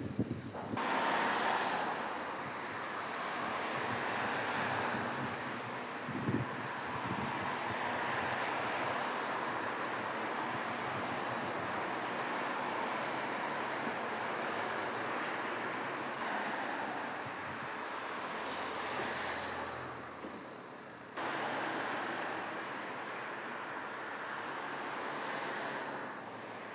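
Street traffic: cars passing on the road, the noise swelling and fading, with wind buffeting the microphone. About three-quarters of the way through, the sound jumps suddenly louder.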